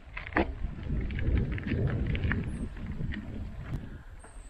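Wind buffeting the microphone: a low rumble that swells about a second in and eases toward the end, with a few light clicks.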